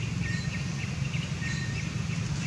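Outdoor ambience: a steady low hum under faint, short high chirps repeating about three times a second, with two brief whistles, one early and one about one and a half seconds in.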